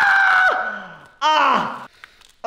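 A man screaming in pain as a dried peel-off mask is ripped off his skin. One long, held scream ends with a falling pitch about half a second in, and a second, shorter cry that drops in pitch follows about a second later.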